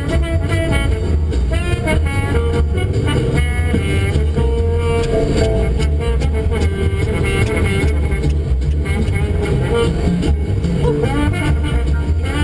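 Jazz music playing on the car radio inside the cabin, over the steady low rumble of the car on the road.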